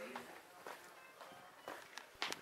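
Faint footsteps of a person walking on a hard floor, heard as a few soft steps, with faint voices and a faint tone in the background.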